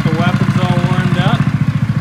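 A DTV Shredder tracked vehicle's engine idling, with a steady, fast, even putter.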